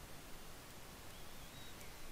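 Faint steady hiss of room tone and microphone noise, with no distinct event.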